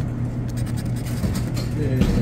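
A scratch-off lottery ticket being scratched, a series of short scraping strokes over a steady low hum.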